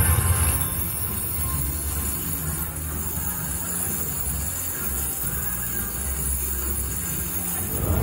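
Pirate Plunder slot machine's cash-out music and sound effects playing steadily while the cash-out meter counts up, with a steady low hum beneath.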